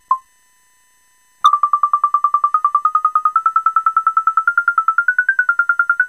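Electronic synth beeps played over MIDI from a PIC12F675 reading two CdS photocells: one short note near the start, then from about a second and a half in a fast run of short repeated notes, about ten a second, stepping slowly up in pitch.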